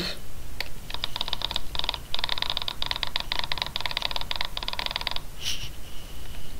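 Fast, dense computer keyboard typing, a rapid run of small key clicks starting about a second in and stopping just after five seconds, with a brief break near two seconds.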